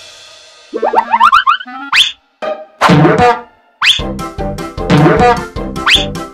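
Cartoon sound effects: a run of quick rising boing-like glides about a second in, and sharp upward swoops near two and four seconds. About four seconds in, a bouncy children's music track with a steady beat starts.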